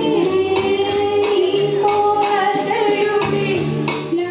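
A woman singing a slow melody with long held notes into a microphone, over musical accompaniment with a steady beat.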